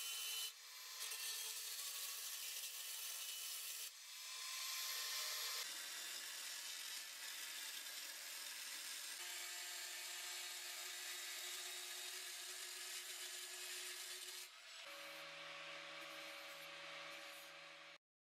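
Angle grinder with a thin cutoff wheel cutting through black steel stovepipe: a steady, hissing grind that shifts in tone and level a few times as the cut works around the pipe.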